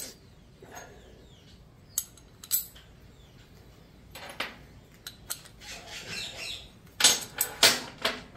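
Mild-steel hinge plates, bolts, nuts and washers clinking and knocking against each other and the metal workbench as the hinge is assembled by hand: a few scattered light clicks, then the loudest knocks about seven seconds in as the hinge is set down.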